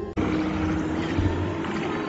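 A steady rushing noise cuts in abruptly just after a brief dropout, covering the music, whose sustained tones carry on faintly underneath.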